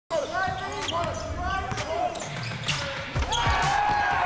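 Basketball game sounds on an indoor court: a ball bouncing in uneven knocks, with short squeaks from sneakers on the hardwood and voices.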